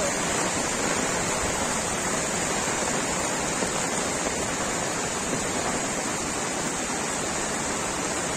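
Steady rush of muddy floodwater pouring across a road in heavy monsoon rain: an even, unbroken roar of water with no let-up.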